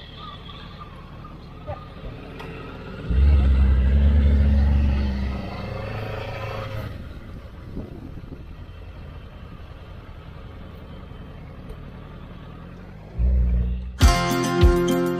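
Motorcycle engines pulling away from a stop and riding at low speed. There is a loud, low rumble that climbs in pitch for about two seconds, starting about three seconds in, and another short loud rumble near the end.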